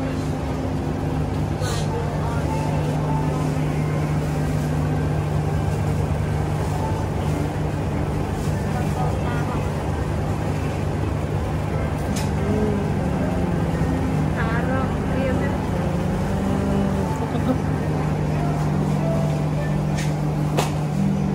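Supermarket ambience: a steady low hum with faint background voices.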